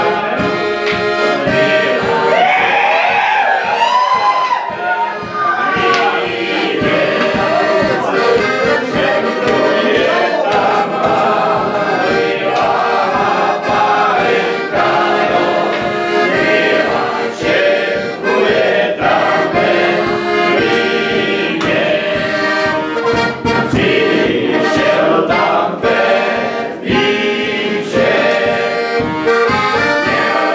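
Accordion playing a folk tune with voices singing along, over a steady beat.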